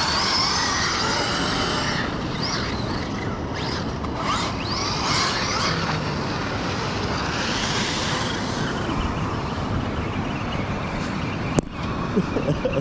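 Brushless electric motors of RC monster trucks whining, rising and falling in pitch several times as the trucks accelerate and back off on sand, over a steady hiss. A single sharp click near the end.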